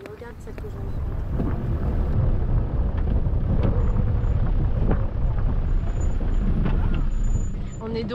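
Toyota Land Cruiser HDJ100 4x4 driving slowly over a rough, stony dirt track: a loud, steady low rumble of engine and tyres that builds about a second in, with scattered knocks from stones and the body jolting.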